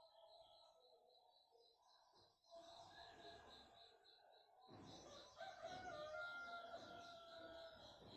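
Faint bird calls: a high, even chirping repeating several times a second throughout, and a longer held call in the second half.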